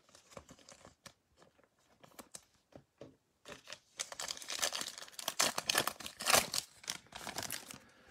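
Trading-card pack wrapper being torn open and crinkled by hand: a few faint handling clicks first, then from about halfway a dense run of crinkling and tearing.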